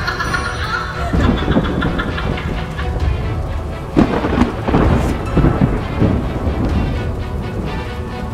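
Dramatic soundtrack music over a heavy, rumbling bed of noise, with a sharp hit about four seconds in.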